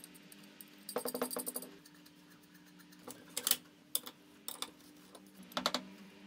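Steel bolts and painted steel bracket parts clinking and knocking together as they are handled and fitted. There is a quick run of clicks about a second in, more clinks around the middle, and a short cluster near the end.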